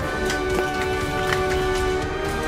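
Background music with long held notes, laid over the footage.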